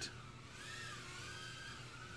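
Faint high whine from a tiny whoop quadcopter's small brushless motors, its pitch gliding up and then down as the throttle changes.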